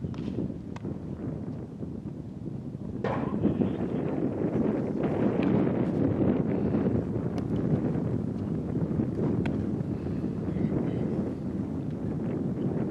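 Wind buffeting the microphone, a low rumble that grows louder about three seconds in, with a few sharp knocks scattered through it, the clearest one about three seconds in.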